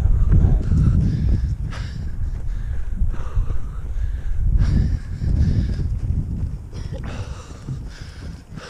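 A runner breathing hard, with footsteps on a grass trail, heard through a close action-camera microphone. Low wind and handling rumble swells and fades throughout.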